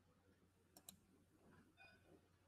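Near silence on a video call, with two faint clicks just before a second in and a faint short sound near the end.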